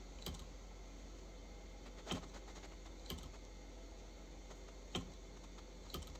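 A handful of short, light clicks at irregular intervals, about five in all, over a faint steady hum.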